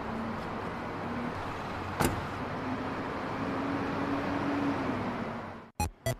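A car door shuts with a single sharp thud about two seconds in, then the car's engine runs with a low hum that rises a little and falls back, over steady street noise. The sound cuts off abruptly just before the end.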